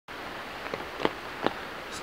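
Rain falling hard: a steady hiss, with three brief sharp taps in the middle of the clip.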